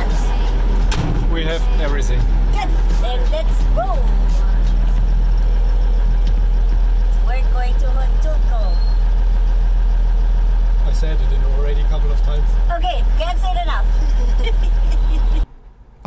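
Mercedes-Benz 813 truck's diesel engine idling steadily, heard from inside the cab. The sound cuts off abruptly shortly before the end.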